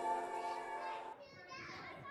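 Background music with long held notes fades and breaks off about a second in. Faint children's voices and chatter follow.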